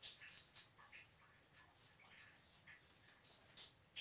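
Near silence with faint, scattered soft clicks of a silver concert flute's keys being fingered and the instrument being handled. No note is played.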